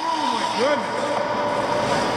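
A man's voice making drawn-out calls, with held tones, over skates scraping on ice.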